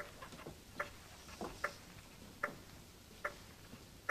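Clock ticking slowly and evenly, about five ticks in four seconds, faint in a hushed room, with soft scratching of a pen writing on paper between the ticks.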